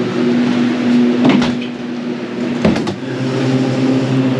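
Walk-in freezer door being opened: two sharp clunks about a second and a half apart over a steady mechanical hum. The hum changes tone after the second clunk.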